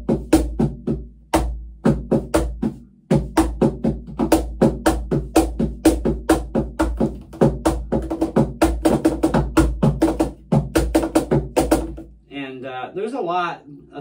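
Pearl Music Genre Primero cajon (MDF box with a meranti face plate and fixed snare wires) played by hand: a fast groove of about five or six slaps a second over deep bass tones, with a brief break about three seconds in. The playing stops near the end.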